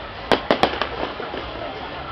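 Fireworks shells bursting: three sharp bangs in quick succession within the first second, then a couple of fainter pops, over the chatter of a crowd.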